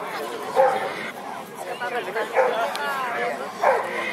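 Dogs barking over the chatter of a crowd.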